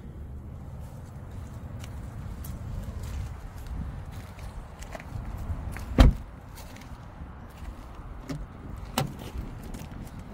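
Car door of a GMC Acadia SUV shut with one loud thump about six seconds in, over a steady low rumble, with footsteps on gravel; a lighter click near the end as the front door is opened.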